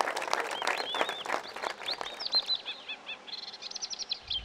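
A crowd of people clapping for a couple of seconds, the claps thinning out, while birds chirp in short high calls throughout.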